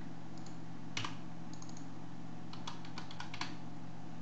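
Computer keyboard keys being typed: a single sharper keystroke about a second in, then a quick run of five or six keystrokes near the end, over a steady low hum.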